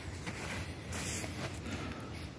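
Faint handling noise of a plastic-and-cardboard blister pack of trading cards being flipped over, with a short rustle about a second in.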